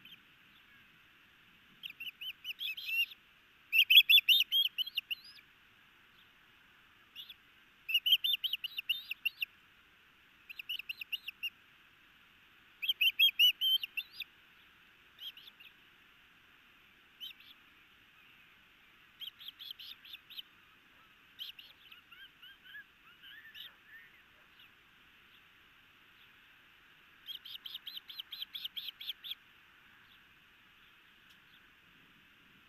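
Juvenile osprey food-begging while an adult works on a delivered fish: bouts of rapid, high, repeated chirps, each lasting a second or two, coming every couple of seconds, loudest a few seconds in and again near the middle.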